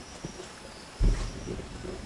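A dull, heavy low thump about a second in, fading over half a second, followed by faint irregular knocks and rustling, as of a person moving about close to the microphone.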